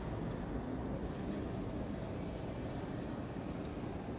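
Steady low rumble of room noise inside a large stone cathedral, with a faint click near the end.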